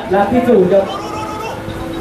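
A man's voice commentating, which about a second in gives way to one long held, steady vocal note.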